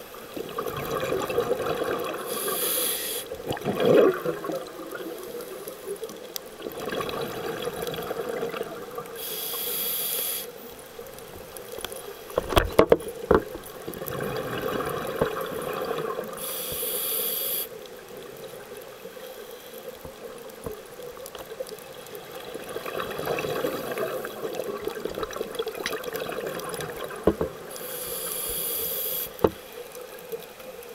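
Scuba diver breathing underwater through a regulator: a hiss on each inhalation and exhaled bubbles gurgling out in between, a breath roughly every seven seconds. A few sharp knocks, likely handling of the camera housing, come near the middle.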